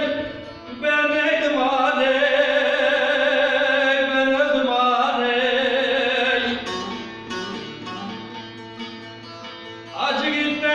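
A man singing a Turkish folk song with a wavering, ornamented voice over a bağlama (long-necked Turkish lute) being strummed. About six and a half seconds in the singing stops and the bağlama plays on alone, more quietly.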